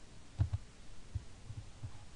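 Soft, low thumps: a quick pair about half a second in, then several single ones, of the kind that desk handling or mouse clicks make through a desk microphone.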